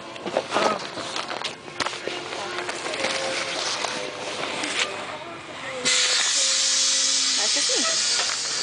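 Rustling and clicking as a book bag is handled close to the microphone. About six seconds in, a sudden steady hiss of the school bus's air brakes releasing lasts about three seconds, then cuts off.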